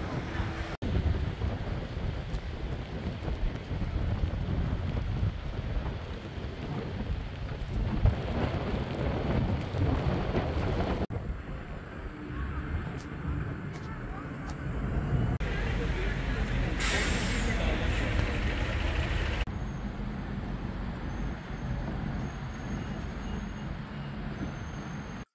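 Road traffic on a wet road: vans, cars and buses passing with engine rumble and tyre noise. The noise changes abruptly several times.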